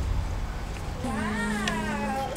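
A long, wavering, voice-like note begins about a second in, over a low hum.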